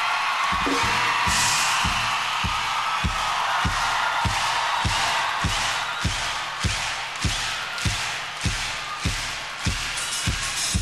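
Concert crowd cheering over a steady kick-drum beat, about one and a half thumps a second. The crowd noise eases off toward the end as the beat stands out more.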